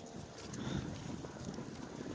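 Goats' hooves clip-clopping faintly and unevenly on a paved street.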